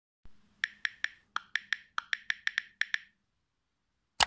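Typing sound effect: about thirteen sharp keystroke clicks in quick succession, with two short pauses like breaks between words, over a faint low hum.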